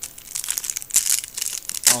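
Foil Pokémon card pack wrapper crinkling and crackling as it is handled and torn open by hand, with sharp crackles about a second in and near the end.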